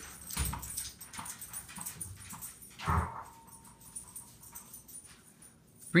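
German shepherd puppy chasing a thrown ball across the room: scattered light taps and thuds of paws and ball, with a louder thump about three seconds in.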